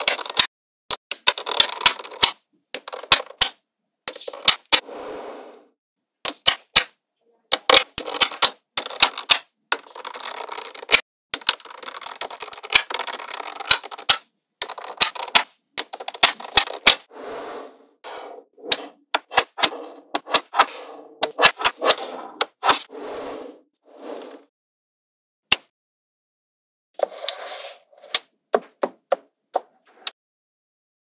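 Small magnetic balls clicking and snapping together in quick runs of sharp clicks, with stretches of rattling as they roll and jostle against each other. The sound stops dead for a couple of seconds near the end, then a few more clicks follow.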